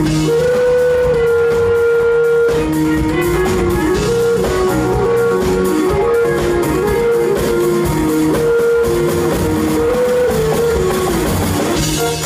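Live band playing a groove of electronic music, jazz and hip hop: a wind instrument carries a melody of held notes, stepping up and down, over keyboards and a drum kit.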